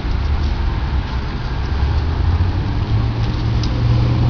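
Low, steady rumble of a motor vehicle engine running, with a stronger steady drone coming in about three seconds in.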